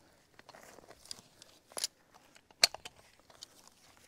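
Large ratchet tie-down strap being handled and threaded: faint rustling of the webbing with a few sharp clicks of its metal hardware, the loudest about two and a half seconds in.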